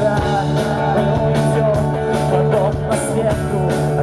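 A live rock band playing loudly, with electric guitar over a steady beat.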